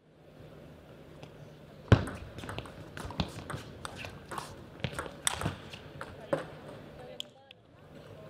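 Table tennis ball clicking off the rackets and bouncing on the table during a rally, a quick irregular series of sharp knocks. The loudest knock comes about two seconds in, and the rally stops after about six and a half seconds.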